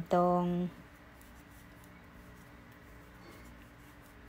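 Faint, soft scratching and rubbing of bamboo knitting needles working through yarn as stitches are knitted.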